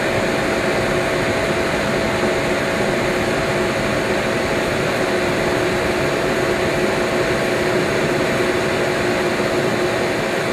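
Wash water spraying into the empty stainless-steel tank of a BioPro 190 biodiesel processor: a steady rush of water with a steady hum beneath it.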